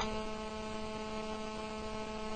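Steady electrical hum from the microphone and sound system: a stack of even, unchanging tones, with a faint click right at the start.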